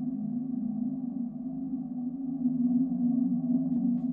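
Low, steady ambient drone of several layered tones, swelling slightly about two and a half seconds in.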